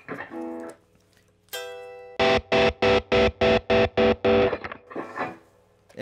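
Overdriven electric guitar (Gibson Les Paul) played through an amp: a chord decays, then a held note is chopped on and off about four times a second by flicking the pickup selector between the live bridge pickup and the neck pickup, whose volume is turned to zero. This is the kill-switch stutter effect.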